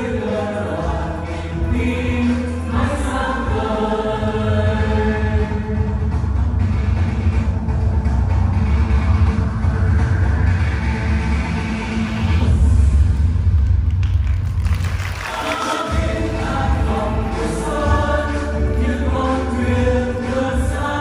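A group of voices singing a Vietnamese youth song over loud backing music with a heavy, steady bass. The singing thins out for a few seconds about two-thirds of the way through, then comes back.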